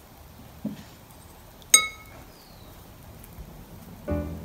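A glass water container clinks once, a little under two seconds in, a sharp tap that rings briefly with a few high tones, as when a paintbrush is knocked against the glass. A brief low sound comes just before it.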